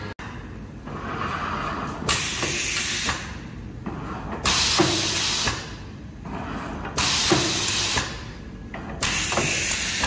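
Steel-rule die bending machine working in cycles: four bursts of compressed-air hiss, each about a second long, with quieter machine running between them.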